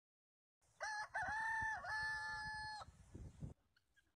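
A rooster crowing once, about two seconds long: the call dips in pitch twice early on, then holds level before stopping, over a faint low rumble.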